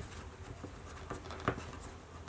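Faint scraping and small taps of a loose eyeshadow pigment jar being handled and its lid put back on, with a sharper click about one and a half seconds in.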